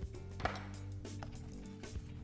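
Soft background music with a few light knocks, the loudest about half a second in, from a round metal baking pan of floured meatballs being handled and shaken to coat them.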